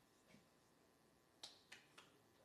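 Near silence: hall room tone, with two faint short clicks close together about a second and a half in.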